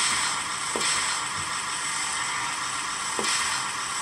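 DCC sound decoder in an OO gauge model Plasser & Theurer tamping machine playing its machine sounds through a small onboard speaker: a steady hissy mechanical running noise, with a few short falling tones.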